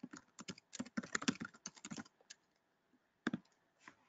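Typing on a computer keyboard: a quick run of keystrokes for about two seconds, then a pause and two more single clicks near the end.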